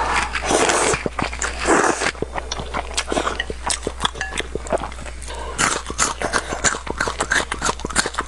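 Close-miked mouth sounds of eating spicy instant noodles: a noisy slurp of a chopstick-load of noodles for about the first two seconds, then quick, irregular wet chewing clicks.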